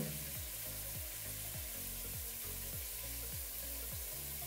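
Water running steadily from a bath mixer tap, a soft even hiss, with faint background music under it.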